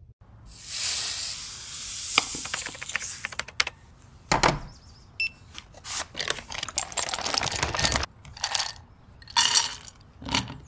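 A kraft paper bag rustling and crinkling as it is handled and opened, with sharp clicks and clinks of small things against dishes, and one heavier thump about four seconds in.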